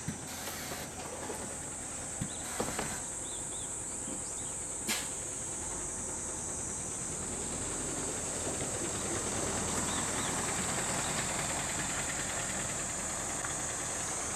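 A diesel route bus running close by on a wet road; its engine and tyre noise grow louder in the second half as it pulls away round the loop. Under it is a steady high-pitched insect drone, with a few sharp knocks in the first five seconds.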